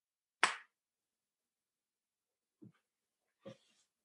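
A single sharp knock about half a second in, dying away quickly, then two faint short sounds near the end, over otherwise silent call audio.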